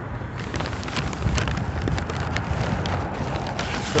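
Crackly rustling of a paper takeout bag and its contents being handled, with many short crinkles over a steady rush of wind on the phone's microphone.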